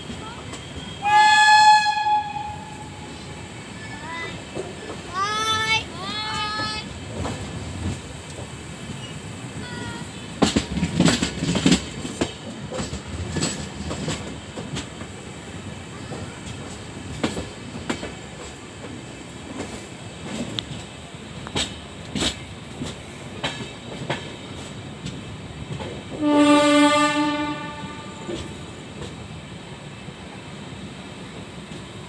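WAP7 electric locomotive horn honking: one long honk about a second in, two short honks around five to seven seconds, and a lower-pitched honk near the end. In between, the LHB coach wheels click rhythmically over rail joints and points.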